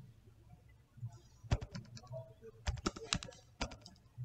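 Typing on a computer keyboard: a run of keystrokes starting about one and a half seconds in, as a short line of text is entered.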